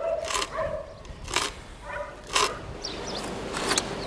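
Hand auger boring lengthwise into a pine branch: scraping cuts of the steel bit in the wood, one about every second as the auger is turned.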